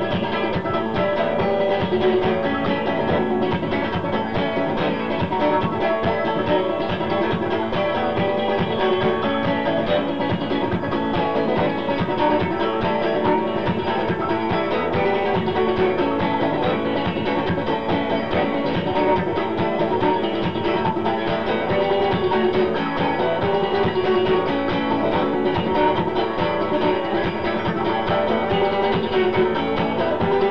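Live instrumental passage: an acoustic guitar strummed in a steady rhythm over a simple drum and hi-hat beat.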